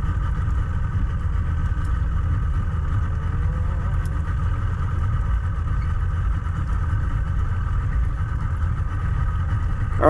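A boat's outboard motor idling steadily, a continuous low rumble with a faint steady hum above it.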